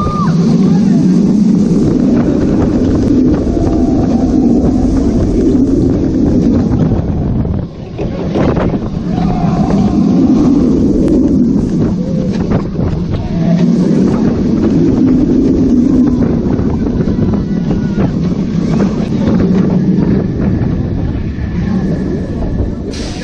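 Steel B&M wing coaster train running along its track at speed: a loud rolling rumble from the wheels, with wind buffeting the microphone. The rumble swells and eases every few seconds through the elements and drops briefly about eight seconds in.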